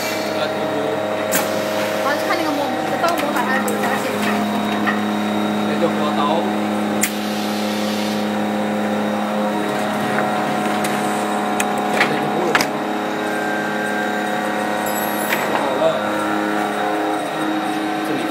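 Plastic thermoforming machine running: a steady machine hum of several held tones, with a few sharp clicks. The lowest tone drops out about halfway through.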